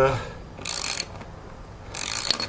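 Socket ratchet wrench clicking on its return stroke while driving a lag bolt into a pressure-treated pine 4x4. It clicks once, a little over half a second in, and again at the very end.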